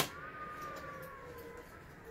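A dog whining: one long, high whine that slowly falls a little in pitch. At the very start, a light click as a plastic lighter is set down on a metal tin.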